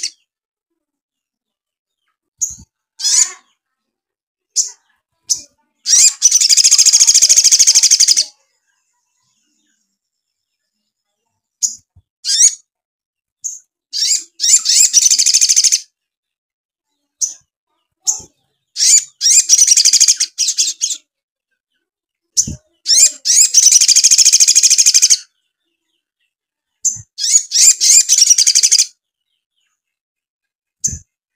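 Male olive-backed sunbird (sogon) singing: about five loud bursts of rapid, high twittering song, each around two seconds long, separated by short single chirps and pauses. The song carries house sparrow (burung gereja) phrases the bird has learned.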